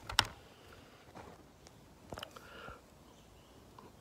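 A rifle being handled and set down: one sharp click about a fifth of a second in, then a few faint clicks and rustles.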